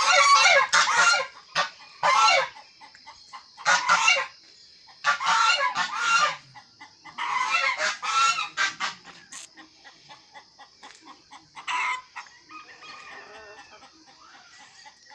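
Domestic geese honking in a series of loud, harsh calls, bunched in bouts through the first nine seconds with one more near the twelve-second mark, then quieter.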